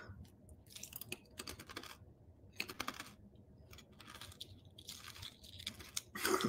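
A person chewing a mouthful of food, a run of faint, irregular short crunches.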